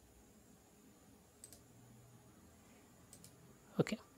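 Faint computer mouse clicks over quiet room tone: a single click, then a quick pair of clicks later on.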